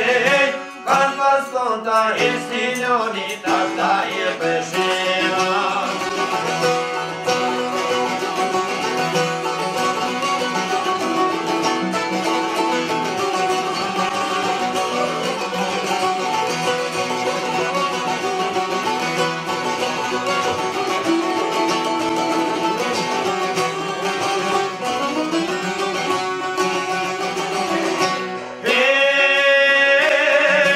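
A çifteli and a sharki, Albanian long-necked plucked lutes, play an instrumental passage of a folk song. A man sings over them for the first few seconds, and the singing comes back near the end.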